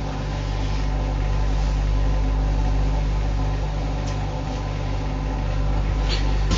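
Steady low machine hum with a faint hiss, unchanging throughout.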